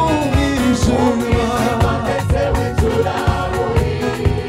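Gospel choir singing with a male lead vocalist, over a band accompaniment with a regular beat.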